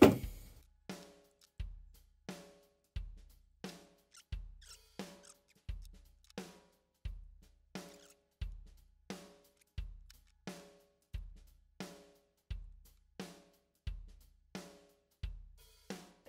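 Background music: a sparse drum-kit beat, bass drum and snare alternating at a steady medium tempo.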